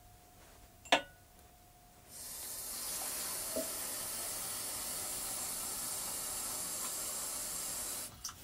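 A single sharp clink of dishware about a second in, then water pouring steadily from about two seconds in. The water is added to weigh down the plate pressing on sprouting mung bean sprouts.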